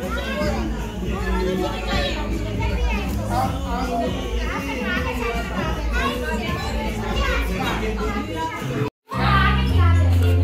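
Many children's voices talking and calling out over background music with a steady bass line. The sound drops out for a moment about nine seconds in.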